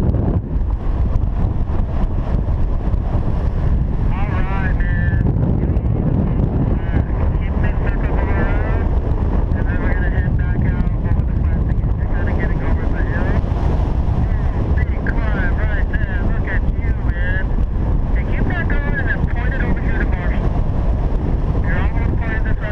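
Loud, steady wind rushing over the camera microphone of a paraglider in flight. From about four seconds in there are intermittent high, wavering tones.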